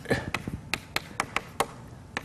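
Chalk writing on a chalkboard: a quick run of sharp taps, about five a second, as the chalk strikes the board with each stroke.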